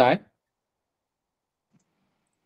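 A voice finishing a word in the first instant, then silence with the audio cut to nothing.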